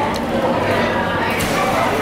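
Steady hubbub of indistinct voices from many diners in a large restaurant dining hall, with no single voice standing out.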